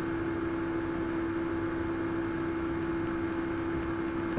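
Steady hiss with a constant low-pitched hum underneath, with no change through the whole stretch.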